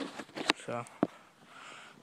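A man says a single short word, with two sharp clicks about half a second and a second in; the rest is quiet.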